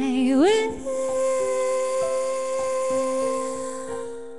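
A woman singing solo to her own electric keyboard accompaniment. Her voice slides up about half a second in and holds one long note over sustained keyboard chords.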